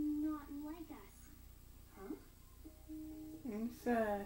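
Animated-film character voices speaking from a TV across a small room, in short lines with pauses between them.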